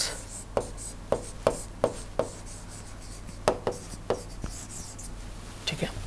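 Stylus writing a word on an interactive smartboard's screen: about ten short taps and strokes, with a pause of about a second near the middle.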